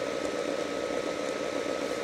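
Steady hiss of room noise with a faint, steady high whine.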